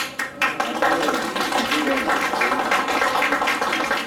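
Audience applauding: many people clapping in a dense, steady stream.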